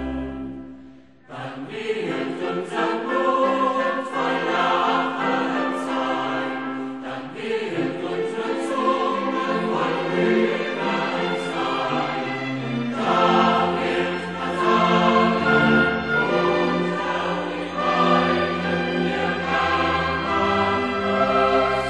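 Choir singing a German sacred choral piece with instrumental accompaniment. The music dies away briefly about a second in, then the full choir comes back in.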